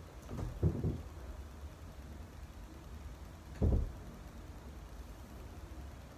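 Bare feet stepping and shifting weight on a wooden floor, with a few dull thumps and one louder thump about three and a half seconds in, over a steady low rumble.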